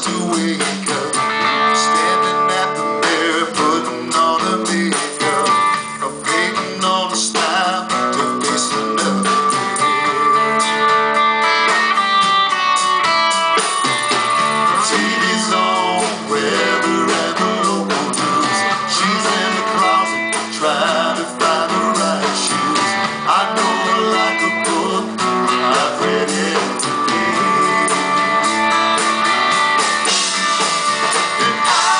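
Live country-rock band playing a song: electric guitars, bass guitar and drum kit, with a male lead singer on a handheld microphone.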